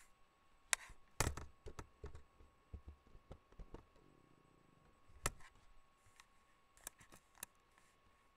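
Faint scattered clicks and knocks, about a dozen, with the loudest cluster about a second in and another single knock around five seconds in, over a quiet room.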